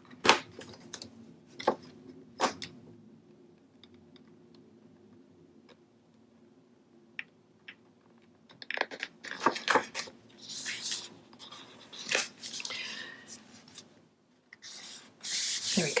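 Cardstock sheets handled on a cutting mat. A few sharp taps come in the first couple of seconds, then after a pause a run of paper rustling and crinkling as the pocket is slid into line and pressed down.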